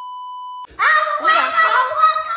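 A steady, single-pitched censor bleep lasts a little over half a second and cuts off sharply, masking a swear word. Then a young child speaks loudly.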